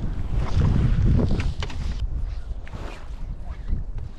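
Wind buffeting a camera microphone on a boat, a steady low rumble with a few short sharp knocks or splashes in the first couple of seconds.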